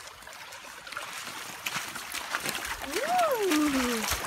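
Wading into a shallow creek: water splashing and sloshing around feet, growing louder through the second half. Near the end a person lets out one drawn-out exclamation that rises and then falls in pitch.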